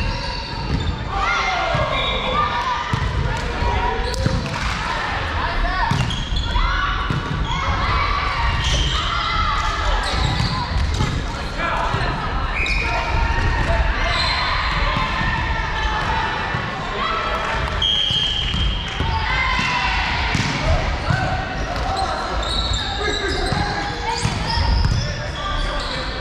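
Women's voices calling and chatting, overlapping and echoing in a large sports hall, with occasional sharp thuds.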